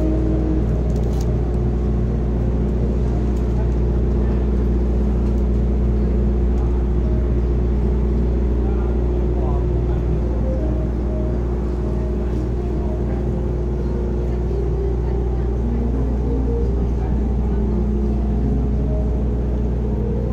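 Slow background music of long held tones over a steady low rumble, with an indistinct murmur of voices.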